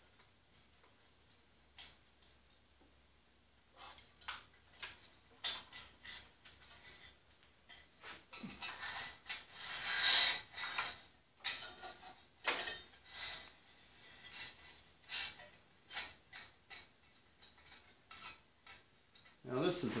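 Light metal clinks, knocks and scrapes as a steel control cable with loose ferrules is pulled up through a steel steering column tube on a hooked wire. The clinks start a few seconds in and come irregularly, with a longer scraping rustle about halfway through.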